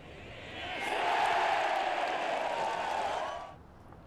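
Golf gallery cheering and applauding as a putt is holed. The cheer swells about half a second in, holds, then dies away shortly before the end.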